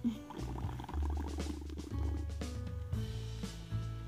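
Baby Alive Sip 'n Slurp doll's drinking mechanism sucking milk up its curly straw with a rattling, bubbly slurp, under background music.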